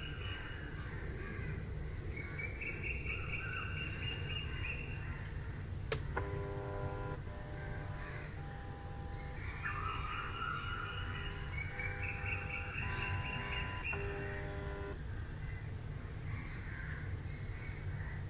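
NEMA 17 stepper motor, driven by an Easy Driver board, whining in a series of short runs, each at a steady pitch that differs from the last as the motor is stepped through its full-, half-, quarter- and eighth-step modes. A click about six seconds in starts the runs, and they stop about fifteen seconds in. A low steady hum runs underneath.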